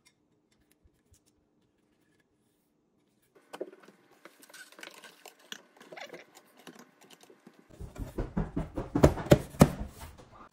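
Metal faucet parts being handled and fitted onto a stainless steel sink deck: scattered clicks and rustling from about three and a half seconds in, turning near the end into a fast run of loud knocks and clunks.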